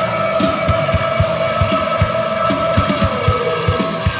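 Funk-punk rock band playing, recorded on a studio demo tape: drums under a long held note that wavers and bends down near the end.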